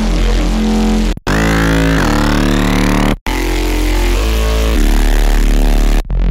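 Synth bass sustain preset playing in Xfer Serum: loud, held, gritty bass notes. The sound cuts out briefly twice, about a second in and about three seconds in, with a rising sweep in the upper tones between the two breaks.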